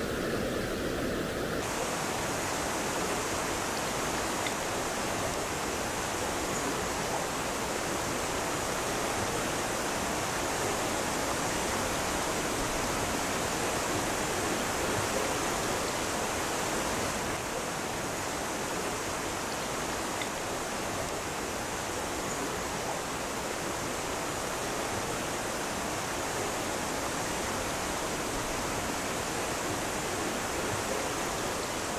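A rocky mountain stream rushing over stones and shallow riffles: a steady, unbroken rush of water. Its tone shifts slightly about two seconds in and again a little past the middle.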